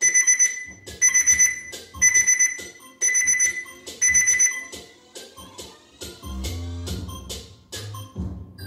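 Workout interval timer alarm beeping: a cluster of rapid high beeps once a second for about five seconds, marking the end of an exercise interval. An instrumental hip-hop beat with heavy bass plays underneath and comes to the front once the beeping stops.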